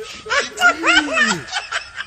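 A person snickering: a quick run of short laugh sounds that rise and fall in pitch, lasting a little over a second.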